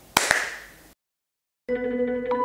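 Two quick hand claps, a sixth of a second apart, fading out into dead silence. Near the end, ambient music with held, echoing guitar-like notes begins.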